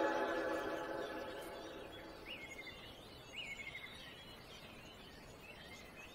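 A slowed-down, reverb-heavy pop song fading out over the first couple of seconds, leaving forest ambience: a faint steady hiss with songbird calls, two matching chirps about a second apart near the middle and a few fainter ones after.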